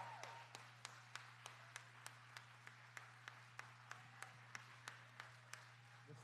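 Faint, steady hand clapping in an even rhythm of about three claps a second, over a low steady electrical hum.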